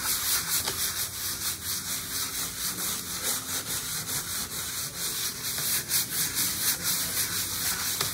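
Sandpaper on a hand sanding block rubbing over dried gesso on an aluminum panel, worked in quick, steady circular strokes. The surface is being wet-sanded with a little water to take down the rough brush texture of eight gesso coats.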